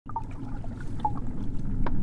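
River water lapping and trickling over a steady low rumble, fading in from silence, with small splashes and a sharp knock near the end.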